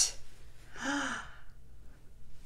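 A woman's single breathy gasp of delight about a second in, with a faint voiced note that rises and falls.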